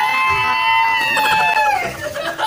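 A long, high-pitched shriek of laughter, one held voice note lasting about two seconds that drops away near the end.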